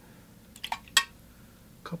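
A few faint clicks and one sharp click about a second in, then a man starts speaking near the end.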